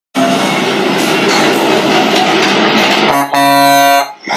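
Channel intro sound effect: a loud rushing, rumbling noise for about three seconds, then a steady horn-like chord held for the last second.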